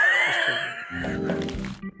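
A loud, high-pitched laugh whose pitch slides up into a squeal, followed from about a second in by a short music sting.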